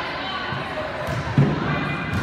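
Steady murmur of spectators' and players' voices in a gym, with one dull thump of a volleyball being hit or landing about a second and a half in.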